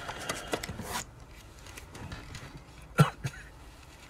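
A man sniffing hard through one nostril to snort a line of cocaine, the long sniff ending about a second in. About three seconds in he coughs sharply, with a smaller cough just after.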